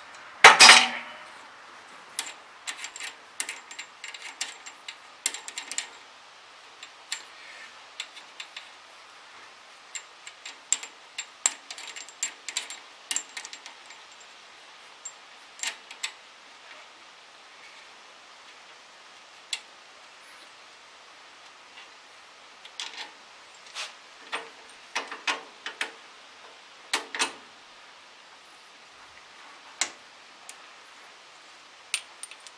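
Steel wrench clinking and tapping on tractor bolts and metal brackets as bolts are loosened, in scattered clicks and short quick runs of clicks. A loud knock comes about half a second in.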